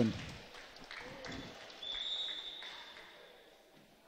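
Faint ambience of a school gymnasium during a volleyball game: distant voices from the court and stands, with a thin steady high tone lasting about a second midway, fading toward the end.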